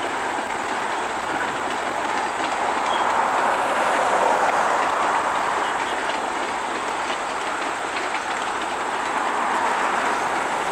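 Passenger train of private railroad cars rolling past at a distance: a steady rumble of wheels on the rails with faint clicking over rail joints, swelling a little about four seconds in.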